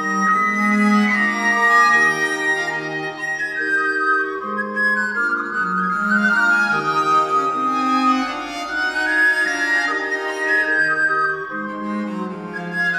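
Two wooden recorders playing interweaving melodic lines in 17th-century style, held notes moving in steps, over a lower accompanying part, from an early-music ensemble on historical instruments.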